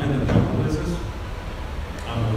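A man talking into a handheld microphone over a PA, heard in a hall.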